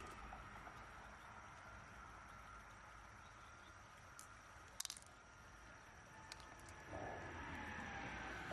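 Near silence: faint stream-side ambience with a thin steady high tone. A brief cluster of small hard clicks just past the middle, as pearls are handled in a shell, and a soft rustle near the end.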